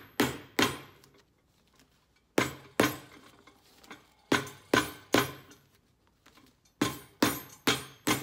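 Cobbler's hammer striking the heel of a cowboy boot mounted upside down on a last: about ten sharp blows in quick groups of two or three, each ringing briefly.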